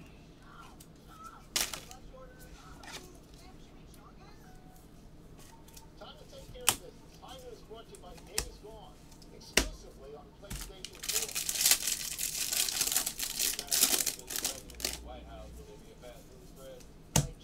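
A trading-card pack wrapper being torn open, a crinkling rip lasting about three seconds near the end, after a handful of sharp clicks and taps of cards and plastic being handled.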